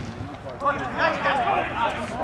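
Men's voices shouting and calling out, overlapping, from about half a second in.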